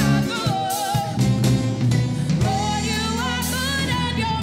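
A woman singing a gospel solo into a microphone, her voice gliding and bending through the phrases, over instrumental accompaniment with sustained bass notes and drums.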